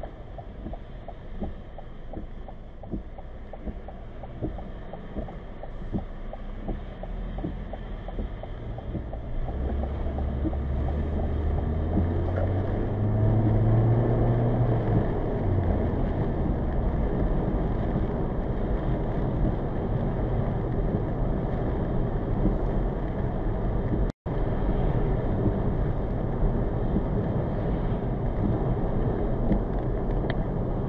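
In-cabin road noise of a 2020 Toyota Corolla driving on a wet road, with scattered ticks in the first several seconds. From about ten seconds in, the engine note rises as the car accelerates, then settles into steady tyre and road noise. The sound cuts out for an instant about three-quarters of the way through.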